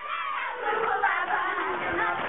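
A crowd of schoolchildren shouting and cheering together, many high voices overlapping.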